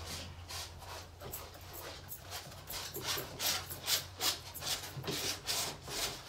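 Steel palette knife scraping and spreading oil paint across a stretched canvas in short repeated strokes, about two or three a second, getting louder and quicker about halfway through.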